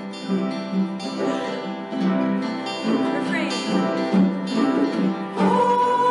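A group of voices singing a hymn together in parts, with a steady instrumental accompaniment underneath.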